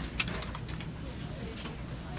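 Grocery store background: a steady low hum with faint voices, and one sharp click just after the start.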